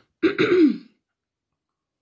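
A woman's short non-speech vocal sound, a single burst under a second long with a falling pitch about a fifth of a second in, then complete silence.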